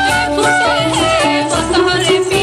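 Bengali jhumur folk song performed live: a woman's voice holding long, wavering notes over instrumental accompaniment, with a steady beat in the low end.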